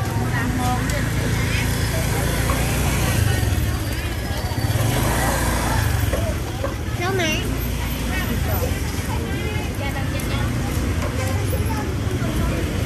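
Busy street-market ambience: motor scooters and a car running close by under a steady low traffic rumble, with people talking nearby.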